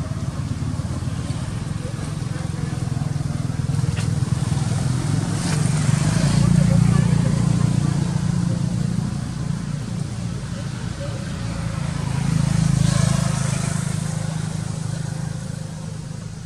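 Low engine rumble of passing motor vehicles that swells twice, about six seconds in and again about twelve seconds in, with faint voices in the background.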